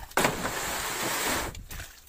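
A rough rustling, sliding noise lasting about a second and a half, starting suddenly, as a plastic crate of bananas lined with plastic sheeting is handled.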